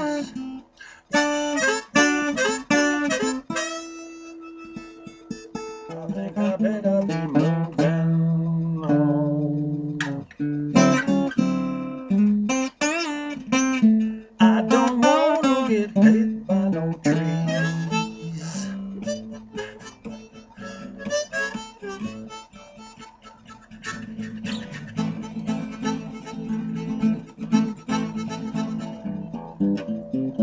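Blues harmonica, played from a neck rack, taking an instrumental break over acoustic guitar, with bent, wavering notes in the middle of the passage.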